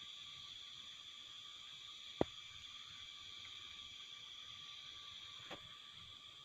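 A faint, steady, high-pitched insect chorus in forest, with one sharp click about two seconds in and a fainter click near the end.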